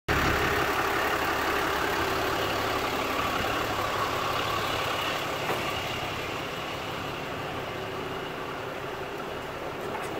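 Ram 5500 truck's engine idling steadily, growing gradually quieter.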